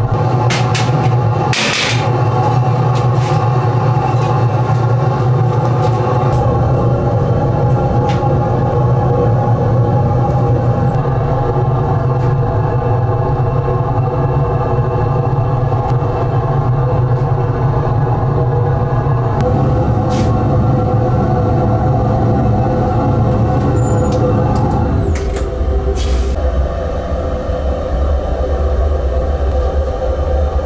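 Gas burners of a raku kiln at full fire: a loud, steady low rumble, its tone shifting a little twice in the second half, with a few short clicks, one near the start.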